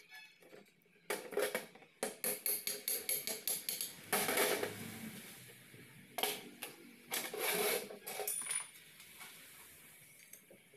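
Metal parts clinking and knocking against each other and the workbench as they are handled, an irregular run of sharp clicks and taps, thickest about four seconds in and again a couple of seconds later.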